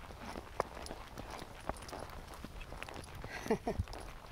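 A horse walking on a dirt and rock trail, its hooves making scattered soft steps and clicks. Near the end come a couple of brief falling sounds.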